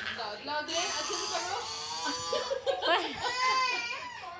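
A toddler starting to cry, with one long wailing cry in the last second, amid speech.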